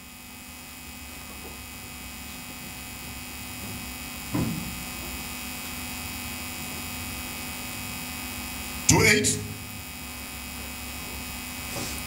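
Steady electrical mains hum carried through the microphone and sound system, growing slowly louder, with a short spoken phrase about nine seconds in.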